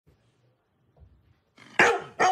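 Near silence, then a single sudden, loud dog bark near the end.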